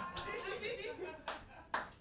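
A few scattered single handclaps from the audience, the loudest near the end, over faint murmuring voices.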